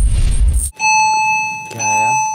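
A low rumbling transition effect that cuts off abruptly, followed by a steady, high electronic beep tone held for about a second and sounding again near the end: the alert signal that comes before an on-screen announcement.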